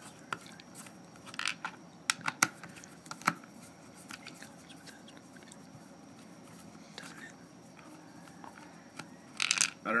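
Light clicks and taps of a small screwdriver and fingers against the plastic belt mount of a holster while its little screws are worked loose. There are a few sharp clicks in the first three and a half seconds and another short flurry near the end.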